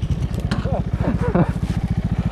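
Honda Grom's 125 cc single-cylinder four-stroke engine idling through an Arrow X-Kone exhaust, a steady, fast low putter, with a man's voice in short snatches over it.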